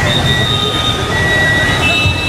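Steady, loud rush and rumble of the flooded river's fast-moving water, overlaid by thin, steady high-pitched whistling tones that come and go.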